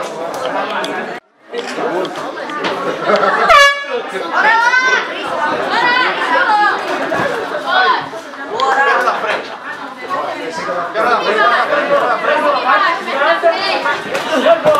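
Ringside crowd chatter and overlapping shouted voices. The sound cuts out briefly about a second in, and about three and a half seconds in there is a short, loud blast that falls in pitch.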